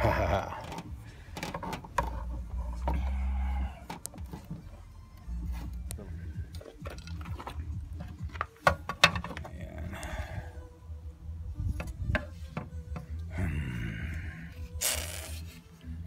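Scattered plastic clicks, knocks and scrapes as a van's stock side-mirror housing is handled and taken apart, with music playing in the background.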